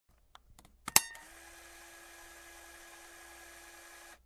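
A few faint clicks, then one sharp loud click about a second in, followed by a steady hiss with a faint low hum tone.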